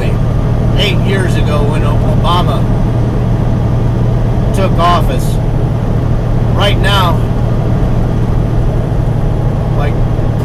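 Steady low drone of a semi truck's engine running, heard from inside the cab, with a man's voice speaking in short bits over it.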